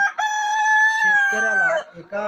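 Kadaknath rooster crowing: one long call held for about a second and a half, dipping in pitch at the end.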